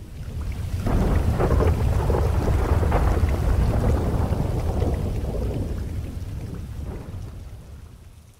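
Rolling thunder with rain: a deep rumble that swells about a second in, then slowly dies away near the end.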